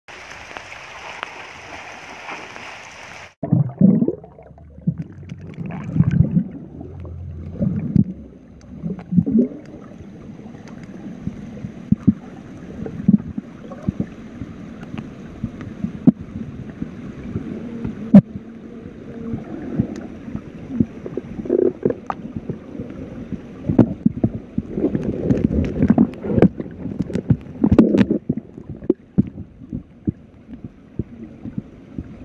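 About three seconds of steady hiss of rain on a river, then an abrupt switch to the muffled sound of a camera underwater: low gurgling and bubbling water with frequent dull knocks and thumps from the diver's movements.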